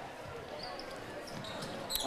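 Live basketball game in a gym: a steady spectator murmur, with the ball bouncing on the hardwood floor and a couple of short high squeaks of sneakers.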